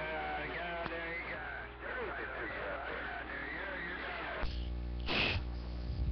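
A voice coming over a radio receiver, too garbled to make out. About four and a half seconds in it cuts off, leaving a steady electrical hum with a buzzy ladder of overtones, the hum the operator wants to get out of his station. A short burst of static follows about a second later.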